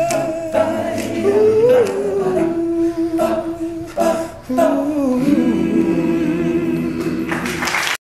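All-male a cappella group singing without instruments: a lead voice over sustained backing chords, closing the song on a long held chord.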